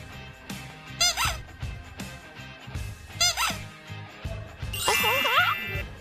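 Two short, squeaky, cartoon-style sound effects, about a second and three seconds in, then a wavering gliding whistle-like effect near the end, over background music with a steady beat.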